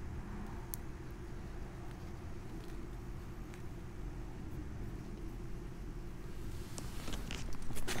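Quiet, steady low outdoor rumble, with a few faint clicks of an apple scion being handled and fitted against a cut rootstock; the clicks come about a second in and more often near the end.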